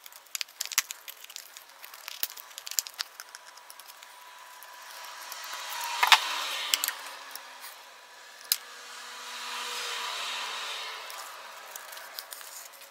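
Light clicks and clinks of a pocketknife and small metal lamp parts being handled, densest in the first few seconds with one sharper click about halfway through. Two slow swells of rushing noise build and fade in the second half.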